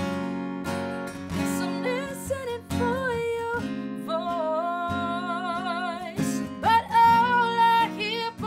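A woman singing with vibrato over a strummed acoustic guitar, holding a long note that swells louder near the end.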